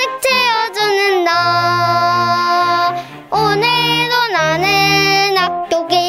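A child singing a Korean children's song over instrumental accompaniment, sustaining two long held notes.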